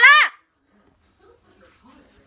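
A woman's loud shouted word ends just after the start; after a short pause, a small dog whimpers faintly.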